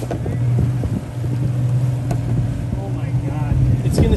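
A boat's motor running steadily with a low drone, wind buffeting the microphone, and faint voices near the end.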